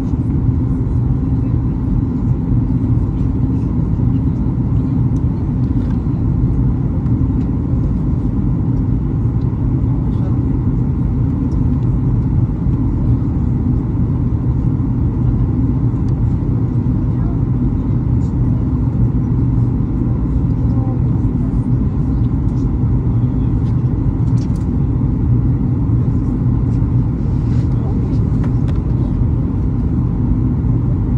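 Steady low drone inside a Boeing 737 cabin during the descent to landing: engine and airflow noise heard from a window seat, with no changes in pitch or level.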